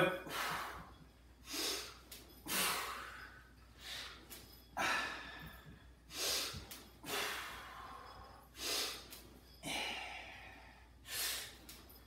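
A man breathing hard, in and out in time with the reps of a standing cable shoulder press, about one breath a second in a steady rhythm.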